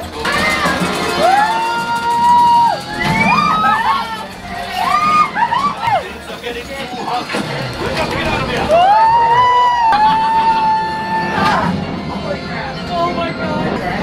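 Riders letting out long whooping shouts and cheers, each rising, holding and falling, over the ride's soundtrack music. The longest whoop comes about nine seconds in.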